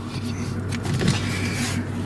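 Mercedes-Benz CL500's 5.0-litre V8 idling steadily, heard from inside the cabin, with a rustling swish in the second half as the seatbelt is drawn across.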